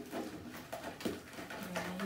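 Hands squeezing and kneading soft homemade slime in plastic bowls, giving a few irregular short squelching clicks.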